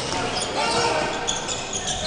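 Live basketball game sound in a sports hall: steady crowd noise with court sounds of play.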